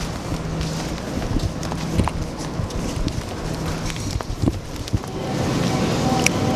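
Handling noise from a camera being carried close against clothing: rustling with scattered irregular knocks and clicks.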